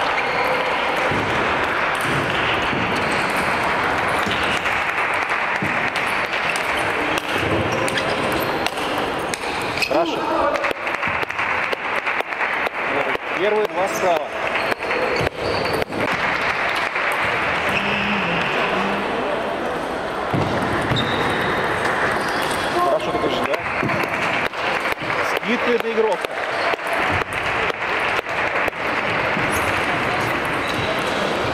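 Celluloid-style table tennis ball clicking back and forth off bats and the table in two quick rallies, one about a third of the way in and one later on. Under it runs the steady murmur of voices in a large sports hall.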